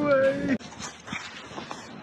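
A dog's long whine, held on one steady pitch and cut off sharply about half a second in, followed by only faint background noise.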